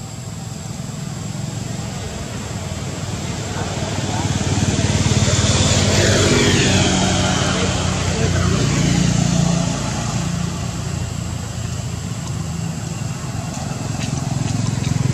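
A passing engine: a low rumble that swells about four seconds in, peaks a couple of seconds later with its pitch falling as it goes by, then eases off.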